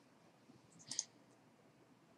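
A single computer mouse click about a second in, short and sharp, against near silence.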